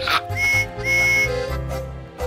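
Two short, high train-whistle toots, the second a little longer, over children's background music.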